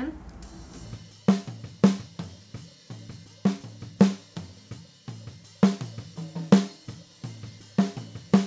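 A close-miked snare drum track played back. Six loud snare hits fall in an uneven pattern, starting about a second in, with quieter hits and bleed from the rest of the drum kit between them.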